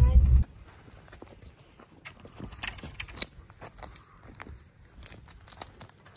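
Low truck-cabin rumble that cuts off about half a second in, followed by scattered crunching and snapping of footsteps moving through dry brush and twigs on the forest floor.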